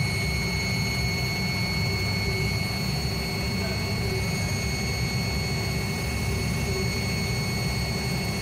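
CNC lathe with a live-tool ball end mill cutting a pattern into a small metal pen slider under coolant. It makes a steady high whine over a low rumble that holds without change.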